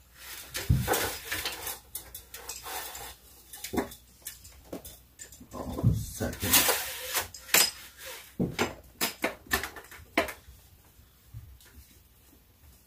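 Irregular knocks, clicks and clatters with bursts of scraping as hands work at a window frame, fitting a camera mount into place; the loudest scraping comes about a second in and again around six to seven seconds.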